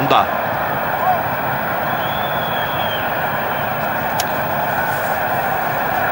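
Steady murmur of a large football stadium crowd, as heard on a TV broadcast, with a faint high tone lasting about a second, two seconds in.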